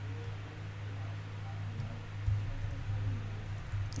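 Steady low hum with a faint hiss, and one brief, soft low bump a little past two seconds in.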